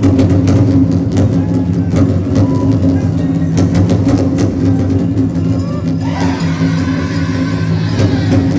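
Powwow drum group singing a dance song in chorus over a steady beat on the big drum. Higher voices come in about six seconds in.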